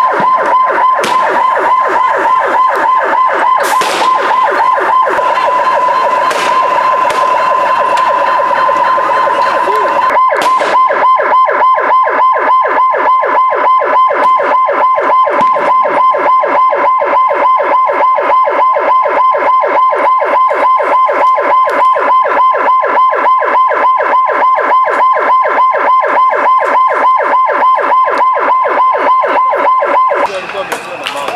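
Police vehicle siren sounding loud and continuous in a fast, regular warble. A few sharp bangs cut through it in the first ten seconds.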